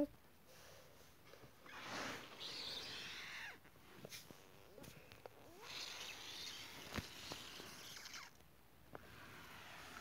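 Faint rustling and brushing as plush toys are moved by hand over carpet and the phone is handled, in two spells of about two seconds each, with a single click about seven seconds in.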